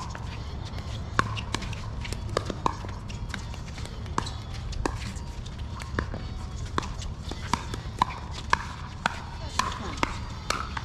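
Pickleball paddles striking plastic pickleballs in rallies: a string of sharp pops, irregular, about two a second, from the near court and the courts beside it.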